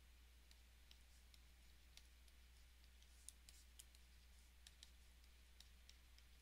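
Near silence with faint, irregular clicks of a stylus tip tapping and writing on a pen tablet, a few a second, over a low steady hum.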